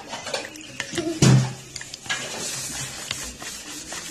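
Plastic spoon stirring and tapping in a plastic bowl of glue and water, with scattered clicks. A louder brief knock with a low hum comes about a second in, followed by a soft steady hiss.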